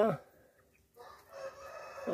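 A rooster crowing faintly in the distance, starting about a second in.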